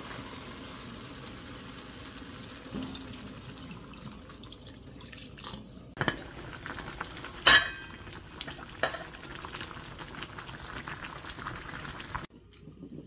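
Food cooking with a steady hiss while utensils clink and knock against pots and dishes: a sharp knock about six seconds in, then a louder ringing clink a moment later.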